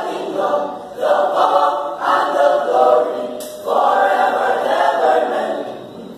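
A male youth choir singing a cappella, in short phrases with brief pauses between them.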